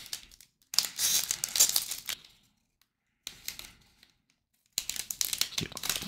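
Foil wrapper of a Topps Update Series baseball card pack being torn open and peeled back, crinkling in three bursts: about a second in, midway through, and near the end.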